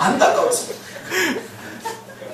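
A voice chuckling in a few short, breathy bursts, the first and loudest at the start.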